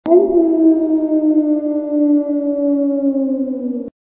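Intro sound effect: a sharp click, then one long pitched tone that rises briefly, sinks slowly in pitch and cuts off suddenly near the end.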